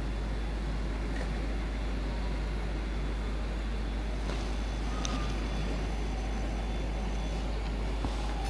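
Steady road traffic noise: a continuous rumble of passing vehicles with no pauses.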